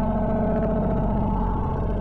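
Steady drone of several held tones over a deep hum.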